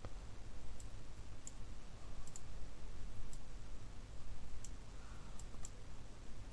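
Computer mouse clicking: sparse, short, faint clicks about once a second, one of them a quick double click.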